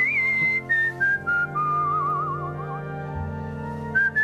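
A man whistling a tune through his lips, a run of notes stepping down in pitch with a fast warbling trill in the middle. He breaks off briefly near the end, then starts again.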